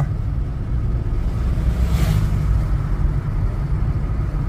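Steady low rumble of road and engine noise heard from inside a moving car. A brief rushing whoosh comes about two seconds in as an oncoming vehicle passes.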